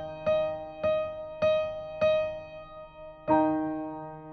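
Piano accompaniment for a vocal warm-up exercise: a single note struck four times at a steady pulse of about 100 beats a minute, each one dying away, then a fuller chord about three seconds in.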